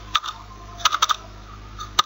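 Computer keyboard keys being typed: one keystroke, then a quick run of three or four, then a single sharper click at the very end.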